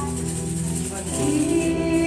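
Praise and worship music: women singing a slow song into microphones over a musical backing, holding long notes, with a change of note about a second in.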